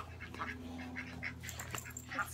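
Ducks quacking faintly in several short, scattered calls over a low steady hum.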